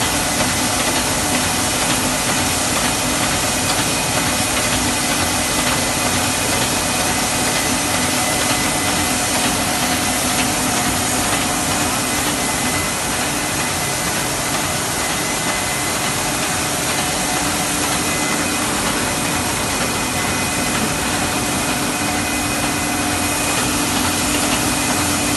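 Steady din of stainless-steel factory processing machinery and conveyors running: a dense, unbroken noise with a faint steady hum in it.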